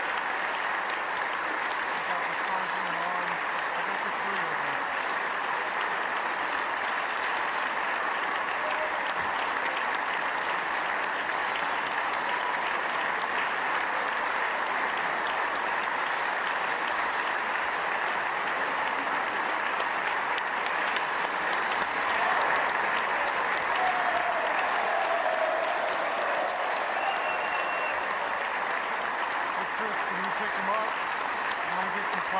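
A large crowd's sustained applause, a standing ovation of steady clapping with scattered voices mixed in. It swells a little about two-thirds of the way through.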